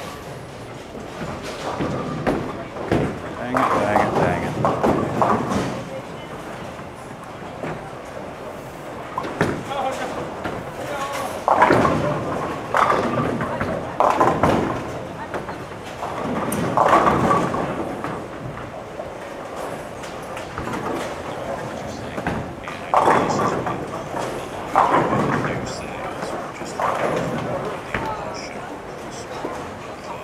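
Indistinct talk among people in a bowling alley, mixed with occasional thuds of bowling balls and pins.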